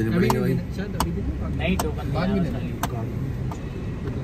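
Low steady rumble of a car driving slowly, heard from inside the cabin, with people talking in the car and sharp clicks about once a second.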